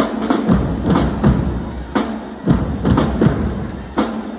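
High school marching drumline playing: snare drums, bass drums and crash cymbals in a fast cadence, with strong accents about once a second.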